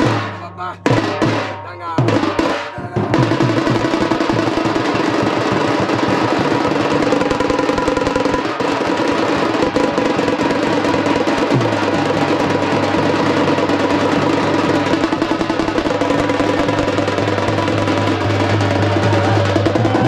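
Dappu frame drums beaten with sticks: a few separate heavy strokes at first, then from about three seconds in a fast, continuous roll.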